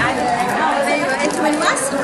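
Chatter of several women talking at once, voices overlapping.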